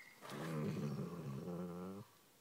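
Basset hound crying: one long, low, moaning whine that wavers a little in pitch and stops abruptly near the end, the cry of an upset dog.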